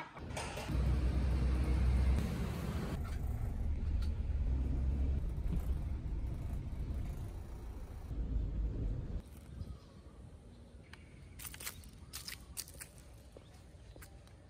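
Minibus ride heard from inside the cabin: a deep, steady engine and road rumble that drops away about nine seconds in. After it a quieter background follows, with a few sharp clicks.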